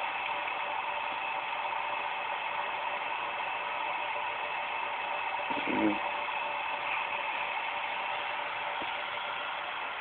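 Small electric motor running steadily: a fine, rapid ratchet-like clicking over a constant whine.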